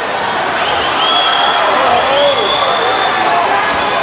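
A crowd of spectators cheering and yelling steadily through a swimming race in an indoor pool arena, with single voices shouting out above the din.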